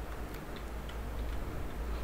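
A few faint computer-keyboard key clicks over a steady low hum.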